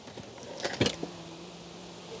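Wide wooden drawer of an IKEA Malm chest being pulled open, with light clicks and one sharper knock just before a second in as it runs out and its pots and jars shift. A faint steady low hum follows.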